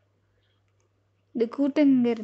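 Near silence for about the first second and a half, then a woman's voice speaking.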